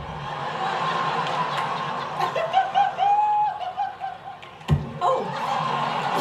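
Studio audience laughing, with a short pitched vocal sound in the middle and a single sharp thump near the end.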